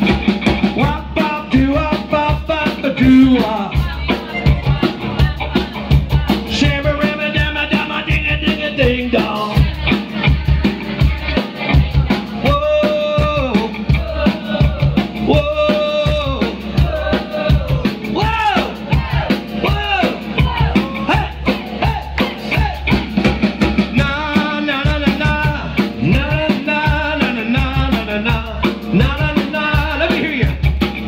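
Live band playing loud: a singer's vocals over electric bass guitar and a drum kit keeping a steady beat.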